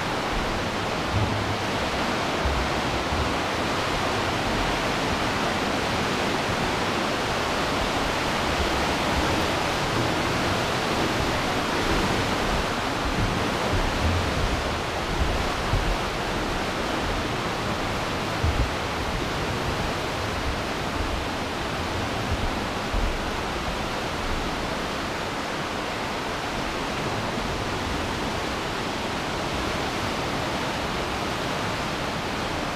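The Aare river's fast whitewater rushing through a narrow limestone gorge: a steady, unbroken rush of water, with occasional low bumps.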